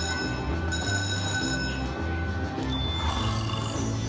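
Aristocrat Buffalo Gold slot machine playing its free-games music over a steady low beat, with bright ringing chime tones through the first half and a single higher tone near the end. The free-games count is raised from 8 to 13: the free spins have been retriggered.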